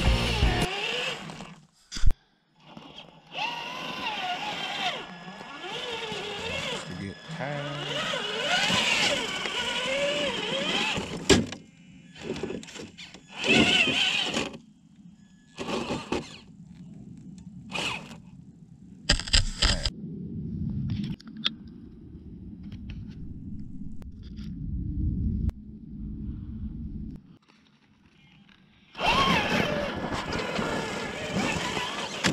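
Indistinct voices over an RC crawler truck driving through snow, with short loud knocks and bursts; the truck's electric drive runs steadily for several seconds in the second half.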